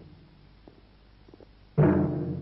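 Dramatic background score: one loud, deep drum stroke near the end, ringing and slowly dying away. The fading tail of the previous stroke is heard at the start.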